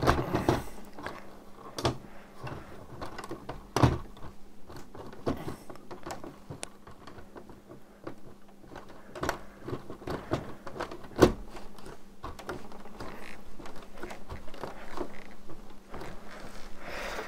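Plastic clicking and knocking of a clip-brick elevator gear train being cranked by hand. It turns stiffly, in irregular clicks with a few louder knocks, because nearly twenty meshing gears have to move together.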